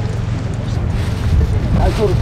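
Strong wind buffeting the microphone as a steady low rumble, over the wash of small waves breaking on shore rocks.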